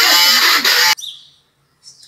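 Electric hand (immersion) blender running loud in a bowl of raw sardines with herbs and spices, grinding them into a kefta paste; the motor whines for about a second, then cuts off suddenly.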